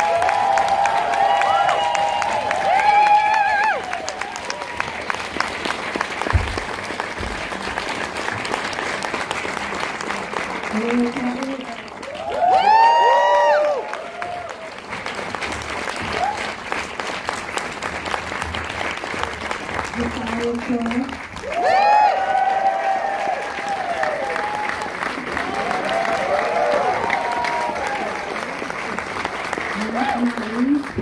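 Audience applauding, with whoops and cheers rising above the clapping near the start, about halfway through and again a little later.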